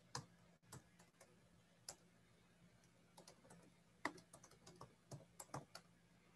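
Faint typing on a computer keyboard: scattered, irregular keystrokes that come thicker in the second half, over a faint steady hum.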